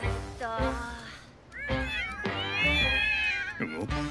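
Cartoon cat character's voiced meowing, a long high wavering call starting about one and a half seconds in, over light background music.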